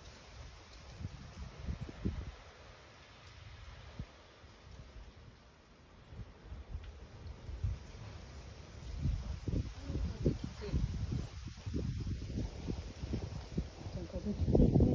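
Wind buffeting the microphone in irregular low rumbling gusts, stronger and more frequent in the second half.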